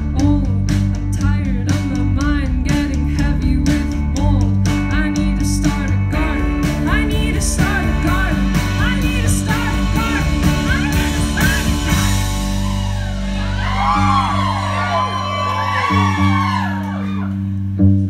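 Live band playing a wordless passage: electric guitar strummed in a steady rhythm over held low notes. About thirteen seconds in, many overlapping sliding vocal sounds rise over the music for a few seconds.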